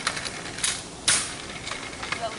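Kick scooter rolling over asphalt, its wheels and frame rattling with many small clicks, with a sharp clack about half a second in and a louder one about a second in.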